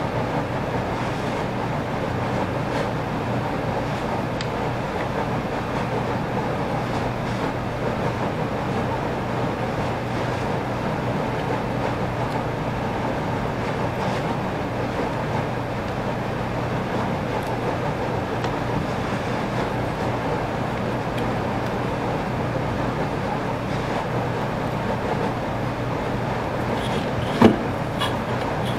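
Steady mechanical background noise with a low hum, unchanging throughout, and one sharp click shortly before the end.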